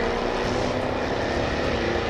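Jaguar F-Type Coupé sports car running on a race track: a steady engine and exhaust drone with a faint low hum and no sharp events.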